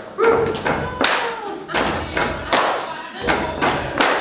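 Irregular sharp thumps and slaps, about two a second, from a straitjacket escape struggle, over faint background music.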